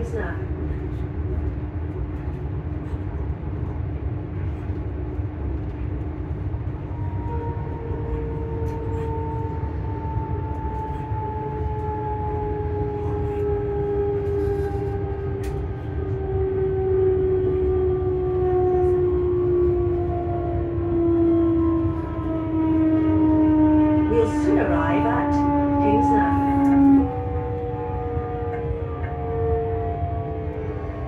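Electric multiple-unit train running, heard from inside the carriage: a steady low rumble under a traction-motor whine. The whine falls slowly in pitch and grows louder, then cuts off sharply a few seconds before the end.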